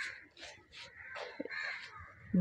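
Faint background bird calls: a few short calls.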